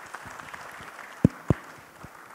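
Audience applauding, thinning out toward the end, with two sharp knocks about a second and a quarter and a second and a half in.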